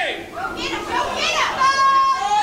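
High-pitched, squeaky voice-like sounds whose pitch slides up and down in a few short phrases.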